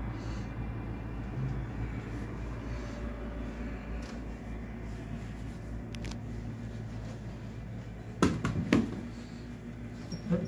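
Steady low hum of a running fan, broken by two sharp knocks a little after eight seconds in.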